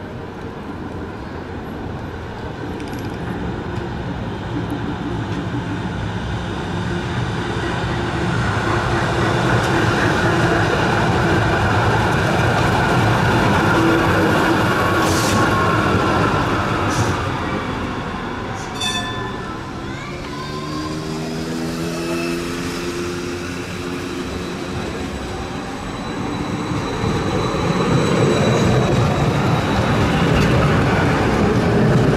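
Two coupled BLT Schindler articulated trams running on street track, getting louder as they come close and pass about ten seconds in. Later a tram's motor whine rises in pitch as it accelerates, and the running noise builds again near the end as another tram approaches.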